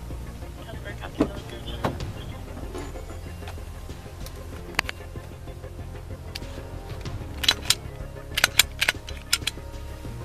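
Steady low hum of an idling vehicle with scattered sharp metallic clicks and jingles, bunched together near the end, from duty gear and a holstered handgun being handled while a firearm is taken off a man during a pat-down.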